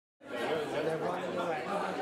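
Chatter of many people talking at once in a large room, several voices overlapping. It cuts in suddenly a fifth of a second in.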